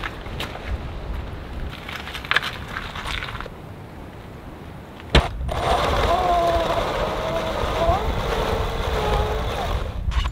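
Brushless electric motor whining under load as it drives an ATV tire through a chain on gravel, its pitch wavering and slowly sagging; the tire grips, but the racer has too much friction to get going. Before the motor starts, about five seconds in, there are only faint knocks and handling clatter.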